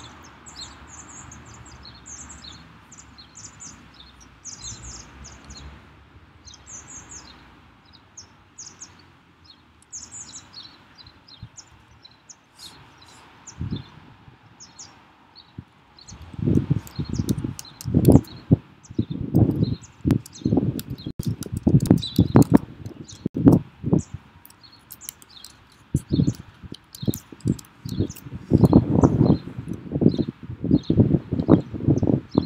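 Keyboard typing: irregular keystroke clacks and thumps, loud and dense over the second half. Before that, only short high bird chirps are heard, repeating every second or so.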